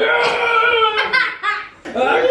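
A person laughing hard: one long, high, held laugh for about a second, then breaking into shorter peals.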